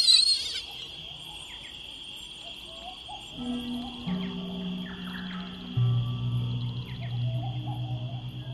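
Designed soundtrack under end credits: a steady high, insect-like drone with a brief sharp high burst at the start. About three seconds in, low sustained music notes enter and step down in pitch twice, swelling near the end.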